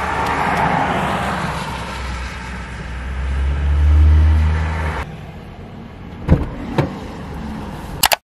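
Road traffic heard from inside a car: a passing vehicle's low rumble builds to a peak about four seconds in and drops off sharply a second later. Quieter road noise follows, with two knocks near the end.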